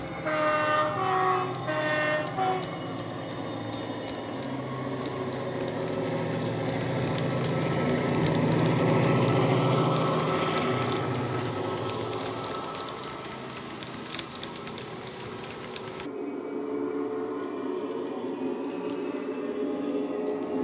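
DCC sound-decoder diesel locomotive sounds played through an OO gauge model's small speaker. A horn sounds several short notes in the first couple of seconds, then the engine sound runs under power, loudest as the model passes about nine seconds in and fading after. About sixteen seconds in, it switches suddenly to a quieter engine sound from another model.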